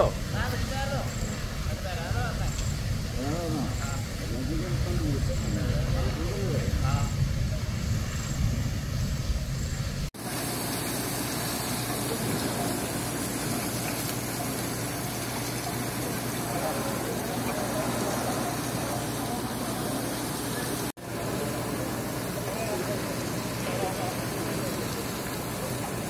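A goods lorry burning fiercely, a steady low rumble of the fire. After a sudden cut about ten seconds in, a steady hiss with a low hum comes from the burnt-out, water-soaked cab as the fire is put out.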